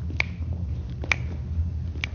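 Dance shoes stepping on a hardwood floor during slow tango walking steps: sharp clicks about once a second over a faint steady low hum.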